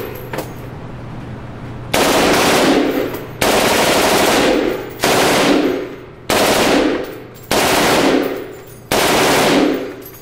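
An M4 carbine firing on full automatic in an indoor range: after a short pause, six bursts of about a second each come back to back, starting about two seconds in.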